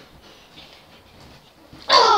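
A boy lets out a loud yell that falls in pitch, starting just before the end, after a stretch of faint rustling.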